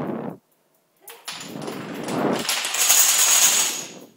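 Wooden Jenga blocks and dominoes toppling in a chain on a hardwood floor. A short clatter breaks off, and about a second in a rapid run of clicks starts up, builds into a dense clatter and dies away near the end as the chain stops short of finishing the course.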